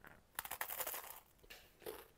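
Crunching bite into a slice of toasted bread, a dense crackle for about half a second starting about half a second in, followed by a couple of crunchy chews near the end.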